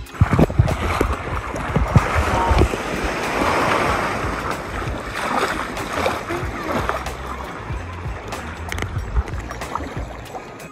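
Sea water washing and splashing close to the microphone: a small wave foaming up over sand, then water lapping around the camera held at the surface.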